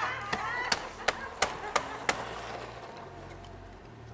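Six sharp knocks on hard plastic, evenly spaced about three a second, dying away after about two seconds. Typical of a bottle of supercooled water being tapped to give it the shock that sets off freezing.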